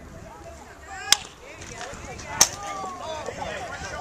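Two sharp smacks of a baseball striking leather or a bat, about a second in and again a little over a second later, the second louder, over spectators talking.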